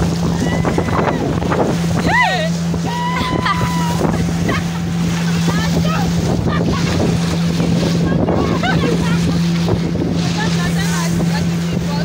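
Outboard motor running at a steady speed, a low drone, as a small fibreglass boat moves across the lake, with water rushing along the hull and wind on the microphone.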